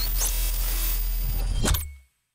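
Electronic end-card sting: a deep, steady bass under a hissing noise bed with sweeping whooshes, a sharp glitch hit near the end, then it fades out.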